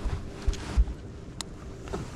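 Wind buffeting the microphone, with two low thumps about halfway through, a faint steady hum underneath, and one sharp click later on.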